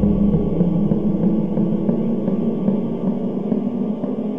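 Eerie background music: a low, wavering drone.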